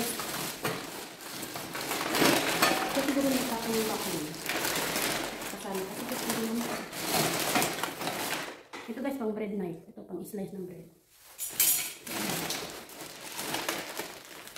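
Rustling of a black plastic bin bag and light clatter of kitchen utensils being rummaged through and pulled out, under a voice talking on and off.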